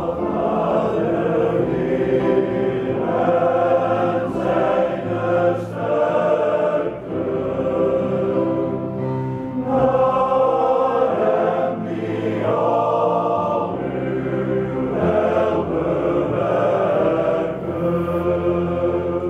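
Men's choir singing, with long held notes and brief breaks about seven and twelve seconds in.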